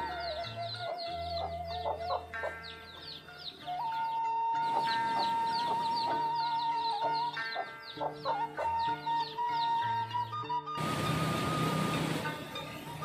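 Chickens: chicks peeping in rapid high, falling chirps, about four or five a second, over soft background music with held notes and a slow bass line. Near the end the chirping gives way to a steady hiss.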